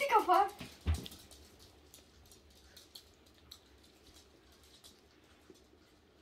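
A woman's laugh trails off at the start, then a soft thump comes just under a second in. After that there are faint, scattered ticks of small chihuahuas' claws on a laminate floor as the dogs play.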